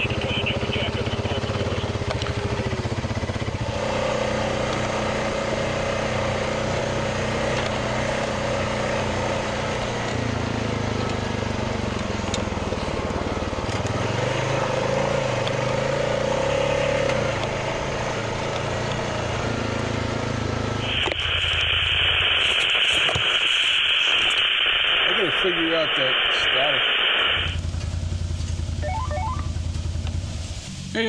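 Honda Rubicon 520 ATV's single-cylinder engine running while riding a dirt track. About two-thirds of the way in, a steady hiss of radio static takes over for roughly six seconds, and the engine drops out beneath it.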